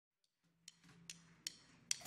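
Faint, evenly spaced percussion clicks on the drum kit, about two and a half a second, over a faint low hum, starting about half a second in.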